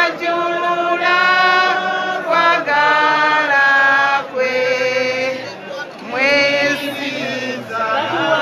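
Several voices singing together in a chant, holding long notes and sliding up into some of them.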